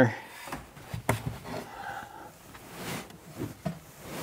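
Rock wool insulation batt being pushed into a wooden stud bay: soft rustling and brushing of the fibrous batt against the framing, with a light knock about a second in.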